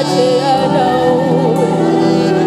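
A woman singing a slow gospel worship song, holding long notes with a wavering vibrato over sustained instrumental accompaniment.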